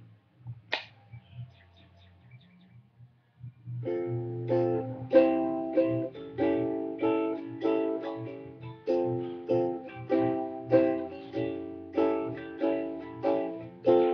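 An acoustic plucked string instrument playing regular chords as the instrumental intro of a song, starting about four seconds in. A sharp click comes about a second in, before the playing starts.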